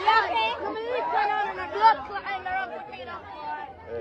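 Speech: a woman talking with wide swings in pitch, with other voices chattering behind her.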